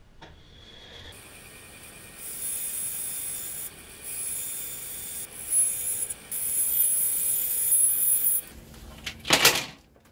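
Bandsaw trimming strips of tank offcut, a steady high hiss from about a second in, with two short breaks between cuts, stopping shortly before the end. A brief loud rustle follows.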